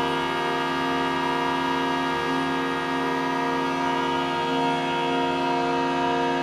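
Home-made air-blown organ pipes sounding a dense, sustained drone of many steady tones held together. One low tone wavers slightly and breaks briefly a couple of times.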